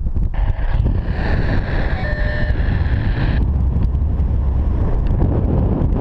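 Wind buffeting the microphone of a camera on a paraglider in flight: a loud, steady low rumble, with a brighter hiss laid over it from just after the start to about halfway through.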